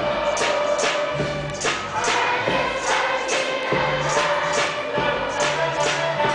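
Large children's choir singing a traditional song in unison over a steady rhythmic accompaniment, about two to three beats a second.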